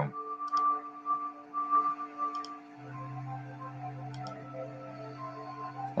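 Soft background music of long held tones, with a deeper sustained note coming in about halfway through. A few faint ticks sound over it.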